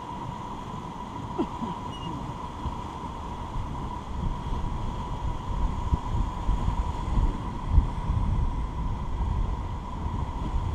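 Whitewater rapids rushing around an inflatable raft, with wind buffeting the microphone. The low rumble and buffeting grow stronger about halfway in, with a couple of sharp thumps near the end, over a faint steady whine.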